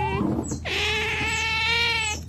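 Asian small-clawed otter giving high, drawn-out whining calls: a short one ending just after the start, then a longer, steady one lasting over a second. Each call opens with a quick, sharp chirp.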